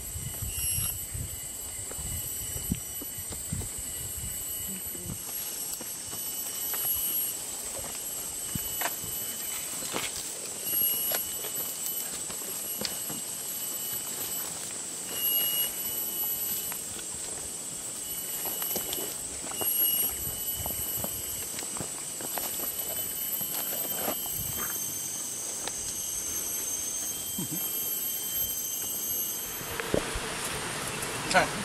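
Rainforest ambience: a steady high insect drone, with scattered rustles and footfalls on dry leaf litter.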